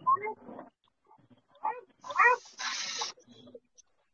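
A few short, high vocal squeaks with sliding pitch, animal-like, about one and a half to two and a half seconds in, followed by a brief hissing burst.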